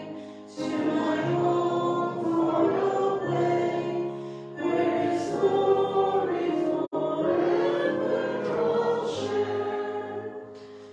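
Slow hymn sung by a choir with long held notes that change pitch step by step. The sound drops out for an instant about seven seconds in.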